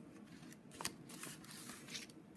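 Faint rustling of paper as a freshly cut-out paper pumpkin and its worksheet are handled, with one short sharp click just under a second in.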